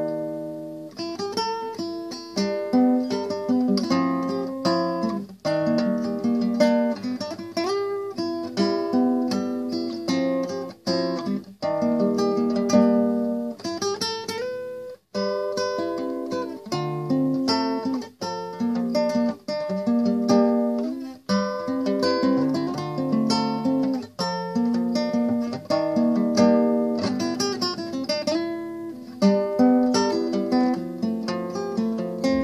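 Nylon-string classical guitar played fingerstyle: a plucked melody over bass notes. The phrases are broken by a few brief pauses.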